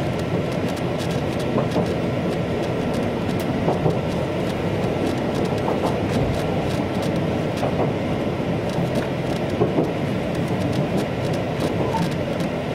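Interior running noise of an Ōigawa Railway electric train, a former Kintetsu unit, moving along the line: a steady rumble with a few faint wheel clicks.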